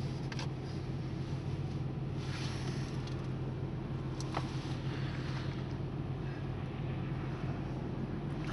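Steady low hum of a 2008 Mazda CX-9's V6 engine and road noise, heard from inside the cabin while driving.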